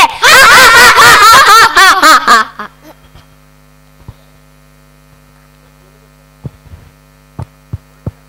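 A loud voice with strongly wavering pitch through the stage sound system, cutting off after about two and a half seconds. Then a steady mains hum from the amplification, with a few faint clicks.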